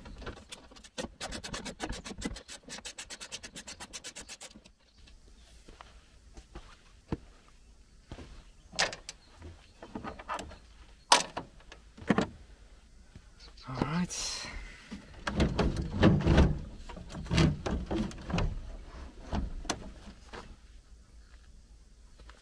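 Work on the front grille panel of a Volkswagen van: a fast run of even clicks for about three seconds, then scattered knocks and plastic-and-metal clatter, the sharpest about eleven seconds in, as the panel is unfastened and swung out.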